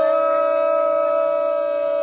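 A singer holding one long, steady note in a folk devotional song. The voice slides up into the note just before and sustains it without a break.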